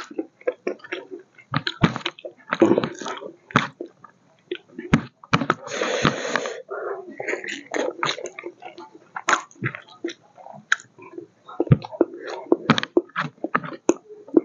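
Close-up chewing and wet mouth smacking of a person eating pork and rice, heard as a run of short, irregular sounds, with one longer, noisier breath- or slurp-like sound about six seconds in.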